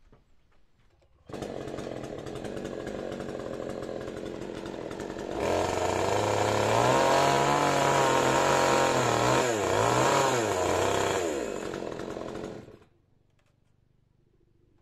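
Husqvarna petrol chainsaw cutting into the top of an upright wooden post. It comes in about a second in and runs, gets louder from about five seconds in as it cuts, its engine pitch wavering and dipping under load, then drops back and cuts out near the end.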